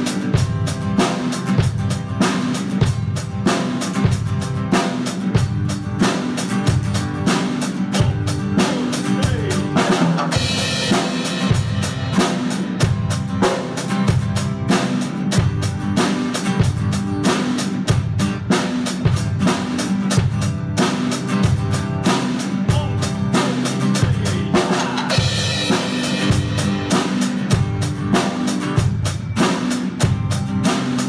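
Drum kit played in a steady, even beat of bass drum and snare, with an acoustic guitar playing along. Twice, about a third of the way in and again near the end, the cymbals ring out more brightly for a couple of seconds.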